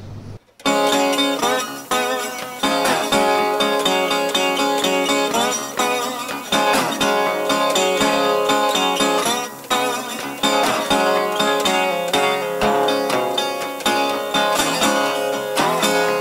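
Metal-bodied resonator guitar played solo, picked notes and chords ringing out; it starts about half a second in after a brief silence.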